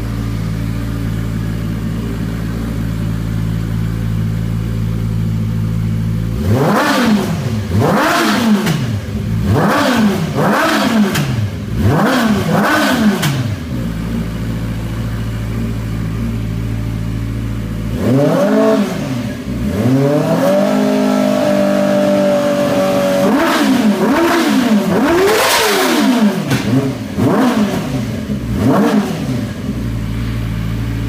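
Yamaha R6 600 cc inline-four engine, swapped into a YFZ450 quad, idling and then revved in a string of quick blips that rise and fall in pitch. Partway through it is held briefly at higher revs, then blipped several more times before settling back to idle.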